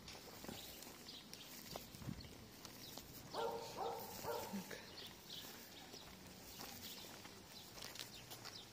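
Faint footsteps on paving stones with quiet street ambience. A short spoken 'mm-hm' comes about three seconds in.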